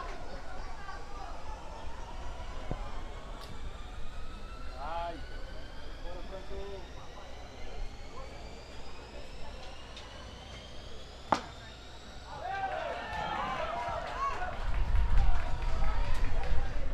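Outdoor beach tennis court ambience with scattered distant voices and a faint tone rising slowly in pitch. About eleven seconds in comes one sharp crack of a beach tennis racket striking the ball. Voices and a low rumble grow louder near the end.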